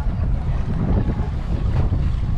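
Wind buffeting a hat-mounted camera's microphone on a boat at sea: a loud, choppy low rumble.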